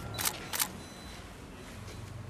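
Two sharp clicks about a third of a second apart, followed by a faint steady low hum.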